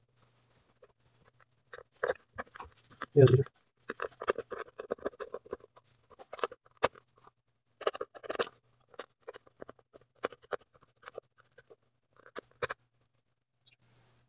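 Serrated knife sawing through a rubber car floor mat and its carpet backing, in short, irregular strokes.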